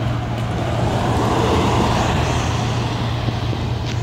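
An EMS SUV driving past without a siren: engine and tyre noise swelling to a peak about two seconds in, then fading, over a steady low hum.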